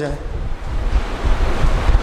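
Steady rushing, rumbling noise of wind on the microphone, heaviest in the low end.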